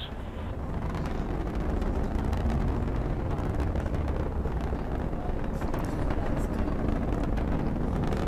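Atlas V rocket roaring in ascent: a steady, deep rumble with a scattered crackle, swelling slightly in the first second.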